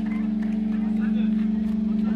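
A steady, unchanging low drone from the band's amplified stage equipment, held through the whole moment, with crowd voices over it.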